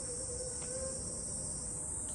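Steady high-pitched buzzing drone of insects in the surrounding trees.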